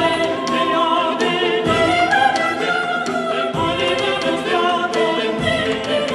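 Early Spanish vocal music of the 15th and 16th centuries: several voices singing together with vibrato, over a deep beat about every two seconds.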